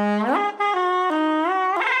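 A Glissotar, a keyless single-reed wind instrument played by sliding a finger along a strip instead of pressing keys, playing a reedy phrase: a low held note glides up, breaks off briefly about half a second in, then moves through several notes joined by smooth slides up and down in pitch.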